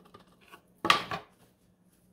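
Wooden boards set down on a wooden workbench: a few faint clicks, then a short wooden clatter about a second in.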